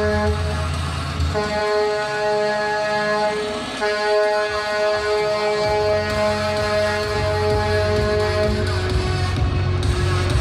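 Truck air horn sounding in long held blasts, broken briefly about a second in and again near 4 s, as a concrete mixer truck drives in, with diesel engine rumble growing louder in the second half. Music plays underneath.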